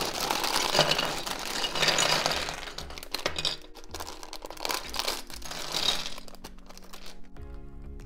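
Thin plastic LEGO parts bag crinkling as it is pulled open and handled, with the small plastic pieces shifting inside. There is light background music throughout, and the crinkling dies away near the end, leaving the music.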